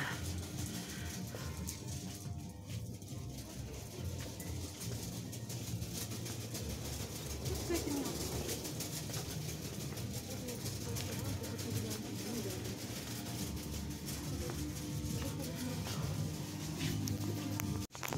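Shop ambience: steady background music with faint voices of other shoppers, cutting out briefly near the end.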